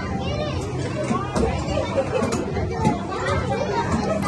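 Children's voices chattering and calling out over one another, with the general din of an arcade game room behind them.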